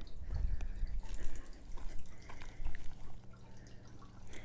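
Water trickling and dripping from a glazed ceramic urn fountain, with scattered small splashes. A low rumble on the microphone in the first second.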